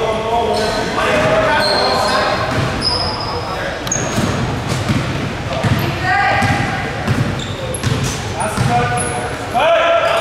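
Basketball dribbled on a hardwood gym floor, repeated bounces echoing in the hall, with short sneaker squeaks and players and coaches shouting.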